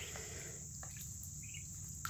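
Quiet background with a steady high-pitched whine, and a soft short peep from a Muscovy duckling about one and a half seconds in.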